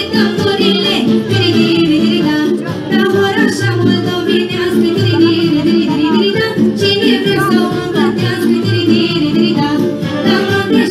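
A girl's voice singing a Romanian folk song into a microphone over instrumental accompaniment, with a bass note repeating about once a second.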